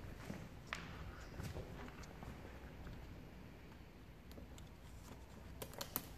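Faint handling sounds of vinyl wrap film being worked by gloved hands at the end of a car's window trim, with a few light clicks, several close together near the end.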